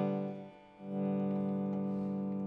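Artist Cherry58L left-handed ES-style hollow-body electric guitar played clean through an amp: a chord rings and fades, then a new chord is struck a little under a second in and rings on steadily. The guitar is a little out of tune.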